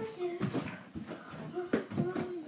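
Low talk from a few voices in a small room, broken by a few sharp knocks, the loudest about three-quarters of the way in.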